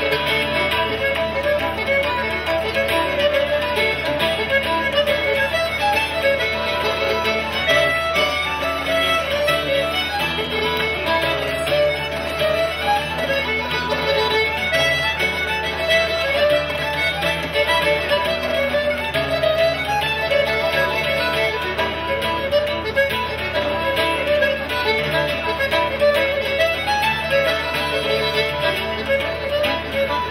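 Live traditional tune on fiddle, button accordion and acoustic guitar. Fiddle and accordion play a quick melody together over strummed guitar chords, steady throughout.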